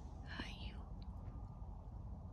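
A short, soft whisper-like voice sound about half a second in, rising and falling in pitch, over a steady low rumble.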